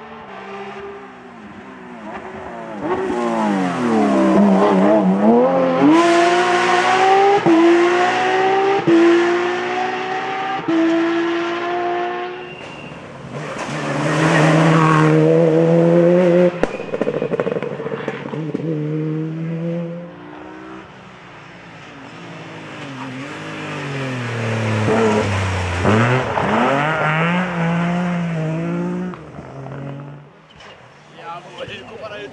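Rally car engines at full speed, several passes one after another. The revs drop sharply for a corner, then climb through the gears in steps, each shift breaking the rising pitch.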